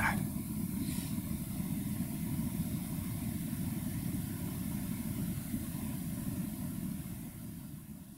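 Steady low room rumble with a faint hiss and no speech, fading out near the end.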